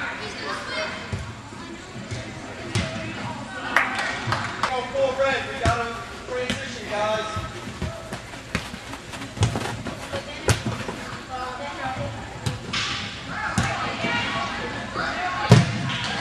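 A futsal ball being kicked and bouncing: a run of short, sharp thuds, the loudest near the end, under indistinct shouting voices of players and onlookers.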